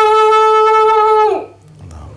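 Muezzin calling the adhan in a single unaccompanied voice: one long held note that drops away briefly at the end, about a second and a half in, leaving only room hum.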